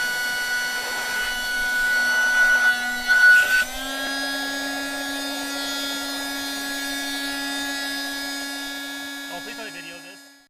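Small electric air-mattress pump running with a steady motor whine. About three and a half seconds in there is a brief louder rush, then the whine steps up a little in pitch and runs on, as the pump is pulled off the mattress valve and runs unloaded.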